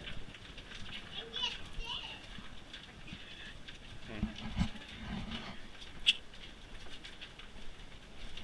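Indistinct chatter of a small group walking single file, with a few low thuds about halfway through and a single sharp click about six seconds in.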